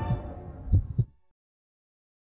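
The tail of a news channel's outro logo sting: a fading musical sound with two deep thumps about a quarter second apart, cutting off to total silence just over a second in.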